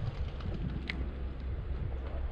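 Wind buffeting the microphone, heard as a steady low rumble, with one brief faint click about a second in.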